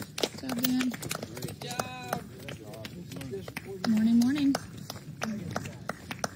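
Running footsteps crunching on a gravel path, with a series of short clicks, mixed with people's voices talking nearby, loudest about four seconds in.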